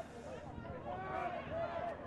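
Faint, distant shouting from the players and sideline spectators on the rugby league field, heard in a lull between commentary.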